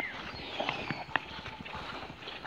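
Footsteps through grass, a few soft, irregular steps with small sharp clicks, most clearly a little past halfway.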